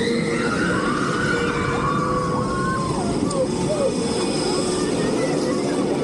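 Bolliger & Mabillard floorless roller coaster train rolling slowly along its steel track out of the station toward the lift hill, a steady rumble of wheels on rail.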